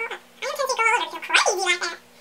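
A woman's voice speaking, from about half a second in.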